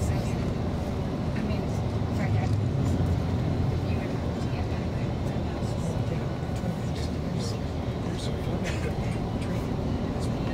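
Steady low rumble of engine and tyre noise inside a moving bus at highway speed, with scattered light ticks and rattles.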